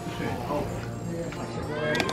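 Indistinct talking over faint background music.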